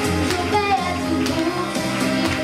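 A young girl singing a French-language pop song into a microphone over instrumental accompaniment.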